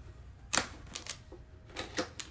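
Small cardboard box being handled and its bottom flap worked open by hand: a few sharp clicks and taps of cardboard, the loudest about half a second in.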